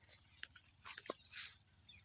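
Near silence outdoors, with a few faint scattered clicks and short rustles.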